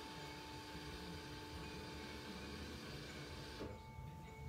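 Faint rustling of a cotton T-shirt being folded and smoothed by hand on a granite countertop, with a steady faint hum underneath. The rustle falls away shortly before the end.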